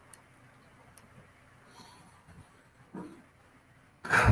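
Near silence: faint room tone, with one brief soft sound about three seconds in.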